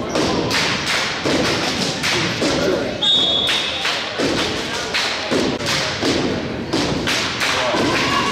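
Cheerleaders chanting a cheer with rhythmic stomps and claps, about two to three hits a second, echoing in a gym; a short high whistle sounds about three seconds in.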